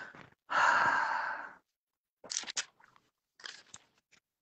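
Handling noise from a phone being moved about on a video call: a rustling hiss of about a second, then a few short, faint clicks and knocks.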